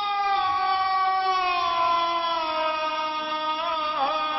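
Middle Eastern-style intro chant: a voice holds one long note that slowly falls in pitch, then turns upward near the end.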